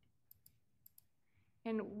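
Two pairs of faint, sharp computer-mouse clicks about half a second apart, then a woman's voice starting to speak near the end.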